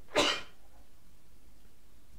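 A person sneezing once, a short sharp burst about a quarter of a second in.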